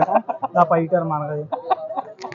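Aseel gamecock making short repeated calls while being held and handled, mixed with a man's voice.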